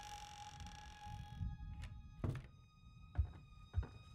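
A held musical drone of high steady tones fades out about a second and a half in, followed by slow, dull thuds roughly every three-quarters of a second: footsteps coming down wooden stairs.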